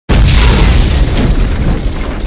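An intro boom sound effect: a sudden loud, deep hit that fades slowly.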